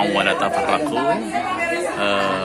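Speech only: a man speaking, continuing his Arabic quotation of a Quran verse.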